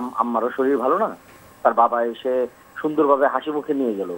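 Only speech: a man talking over a telephone line, his voice narrow and thin.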